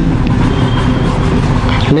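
Steady low rumble of background noise, of the kind left by road traffic or a running motor.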